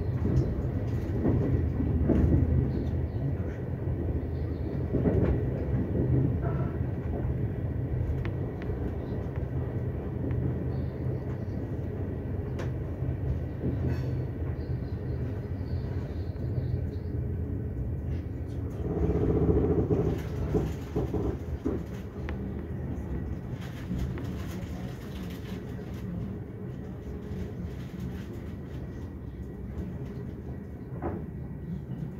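Intercity train running noise heard from inside a carriage as it slows into a station: a steady low rumble with scattered clicks of the wheels over rail joints and points, a louder stretch about two-thirds through, then growing quieter toward the end.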